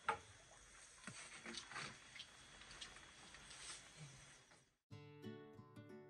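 Faint outdoor background with a sharp knock just after the start and a few lighter clicks and rustles of hose gear being handled. About five seconds in, it cuts to acoustic guitar music.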